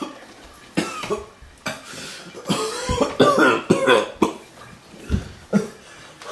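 A person coughing repeatedly in short, irregular fits, with some voiced throat sounds mixed in.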